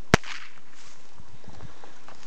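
A single sharp crack, the loudest sound here, followed by a brief hiss lasting about half a second.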